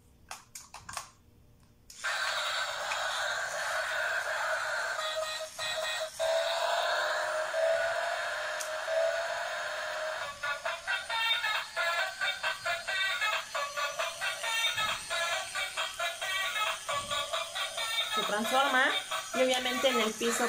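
Battery-powered transforming robot toy car (a yellow Camaro) switched on after a couple of seconds of quiet clicks, then playing tinny electronic music with a synthetic voice through its small speaker, with a fast beat from about halfway. Near the end a rising whine as it changes from car into robot.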